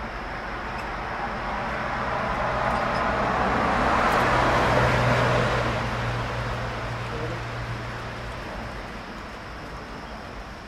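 A motor vehicle passing by: its noise swells to its loudest about five seconds in, with a low engine hum, then fades away.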